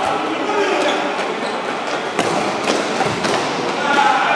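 A futsal ball being kicked and bouncing on an indoor court, giving several sharp knocks that echo around a large hall, over the shouts of the players.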